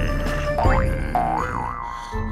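Cartoon sound effects over background music: a quick rising whistle about half a second in, then a springy wobbling boing.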